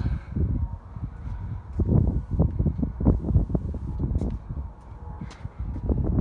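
Wind buffeting the microphone outdoors: an uneven low rumble with irregular thumps, strongest around the middle.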